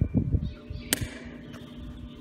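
Small scissors snapping shut once, a sharp metallic click with a brief ring about a second in, after some low handling rumble.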